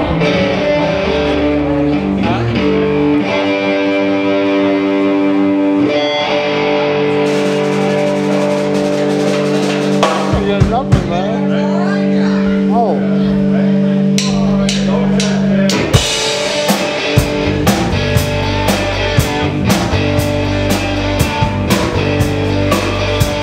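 Live rock band playing: guitar holding sustained chords that change every second or two. About two-thirds of the way through, the drum kit comes in with regular hits.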